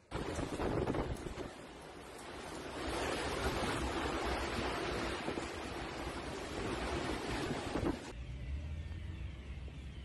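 Tornado wind buffeting a phone's microphone: a loud, dense rushing noise with gusts that swell and ease, cutting off suddenly about eight seconds in and leaving a quieter low rumble.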